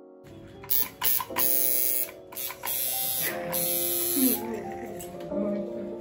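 Electric tattoo machine buzzing while it inks a small tattoo, starting and stopping in short bursts, with background music and voices over it.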